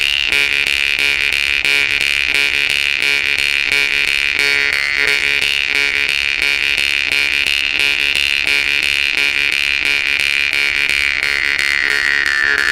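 Yakut temir-khomus steel jaw harp (Volgutov's "Vedun") played with rapid, even plucking over a continuous buzzing drone. A bright overtone melody is held high and slides downward near the end.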